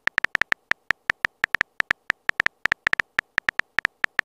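Keypress sound effect from a texting-story app: short, high clicks in a rapid, uneven run, one for each letter typed into the message box.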